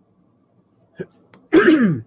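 A man clearing his throat once near the end: a short, rough sound falling in pitch, from a scratchy throat. A faint click comes just before it, about a second in.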